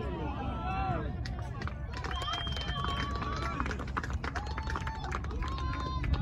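Players and spectators shouting and calling across an outdoor soccer field during play, including several drawn-out calls, over a constant low rumble.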